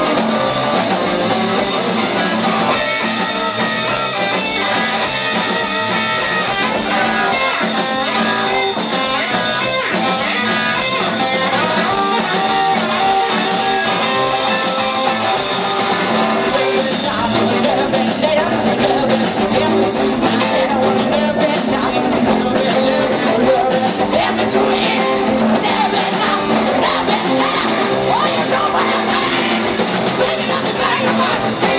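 Live rock and roll band playing, with the guitar to the fore over bass and drums; the drumming grows busier about two-thirds of the way through.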